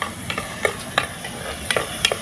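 Cherry tomatoes sizzling as they fry in hot oil in a clay pot over a wood fire, with a spoon stirring them and making about five sharp clicks against the pot.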